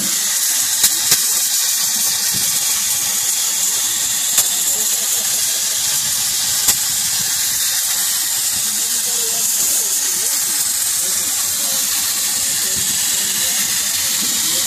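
Compressed air hissing steadily from a radiator back-blow wand as it blasts through a truck's cooler fins, with a few brief ticks.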